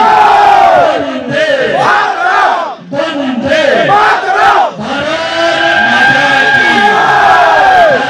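A man shouting slogans into a microphone over a loudspeaker PA, with a crowd shouting along. The shouts are long and drawn out, with two short breaks partway through.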